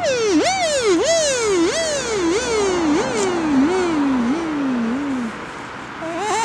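Beatboxer's mouth-made pitched effect: a run of about nine swooping, falling glides, each about half a second long, the whole run sinking lower in pitch until it stops a little before the end.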